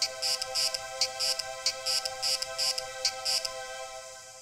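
Electroacoustic music played over loudspeakers: a held chord of steady tones under quick, high hissing pulses, about three a second. The pulses stop about three and a half seconds in, leaving the chord as it starts to fade out at the close of the piece.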